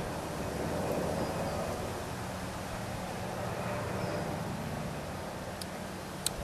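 Steady outdoor background: an even hiss over a low, constant hum, with no distinct events.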